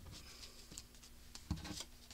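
Paper cards being handled on a tabletop: faint rustling and scraping of cardstock, with a soft knock about one and a half seconds in.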